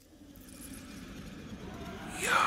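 A low, noisy rumble swelling steadily louder.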